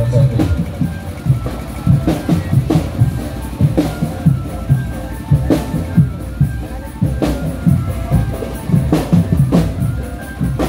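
Drum band playing a fast, steady beat of bass drum and snare strokes, with a few faint held melody tones above.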